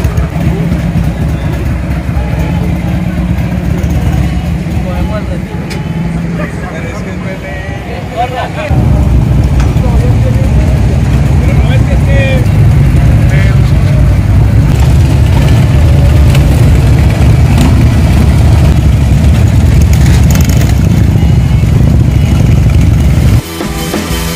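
Harley-Davidson V-twin motorcycle engines running, with voices over the low rumble. About nine seconds in the engine noise gets suddenly louder and steadier; it breaks off into music with a drum beat just before the end.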